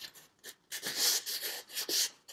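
Paper card sliding back down into a paper pocket on a scrapbook page: a soft rubbing rustle of about a second, near the middle, with a faint tick or two around it.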